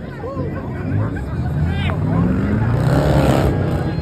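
A car engine revving hard during a burnout, rising in pitch and loudest about three seconds in, over steady crowd chatter.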